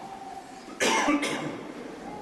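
A person coughs, a short double cough about a second in, the second part weaker than the first.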